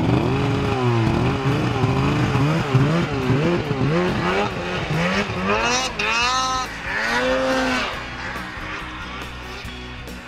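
Snowmobile engine revved up and down in quick repeated blips, its pitch rising and falling. It eases off and quietens after about eight seconds.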